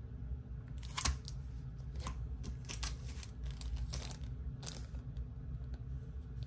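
Plastic packaging of clear stamp sets crinkling and crackling as it is handled, in an irregular run of crackles from about a second in until near the end, the sharpest about a second in.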